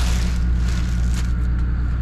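Clear plastic wrapping crinkling as a hand presses into it, most strongly in the first second or so, over a steady low hum.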